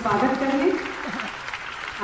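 Audience applauding, with a voice over the first part.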